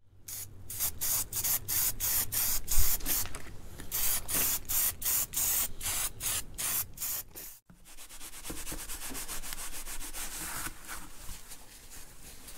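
Aerosol spray-paint can spraying in short repeated bursts, about three a second, as it coats metal cover plates. After a cut, a cloth rubs quickly back and forth over a brass data plate.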